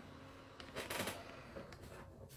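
A short cluster of quick knocks and clicks about a second in, over a faint low hum.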